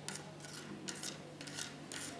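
Faint rubbing and scraping of hands handling a small pill container over paper on a desk, over a low steady hum.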